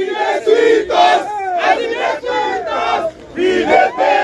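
A crowd of student protesters chanting and shouting together in short, loud phrases, with many voices close to the microphone.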